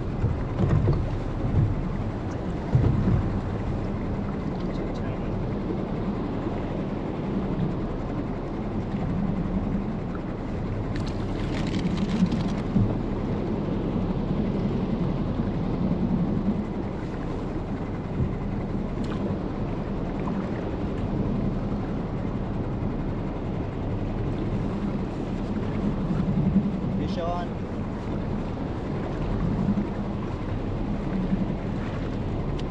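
Steady wind and water noise around a small open fishing skiff at sea, with a brief hiss about eleven seconds in.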